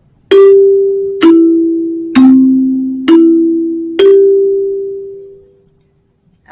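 Five bell-like struck notes about a second apart, each ringing and fading, the last one left to die away. The melody steps down and back up, sol–mi–do–mi–sol.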